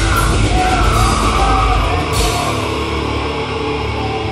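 Heavy metal band playing live: distorted electric guitars, drums and yelled vocals. A little after halfway the deepest bass drops out and the guitars ring on.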